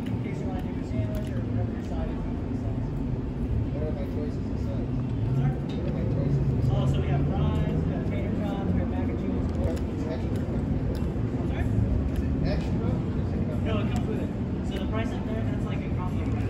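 Outdoor background of people talking at a distance over a steady low rumble. The rumble swells for a few seconds around the middle.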